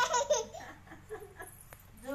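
A small child laughing: a loud, high burst of laughter right at the start, then a few softer giggles.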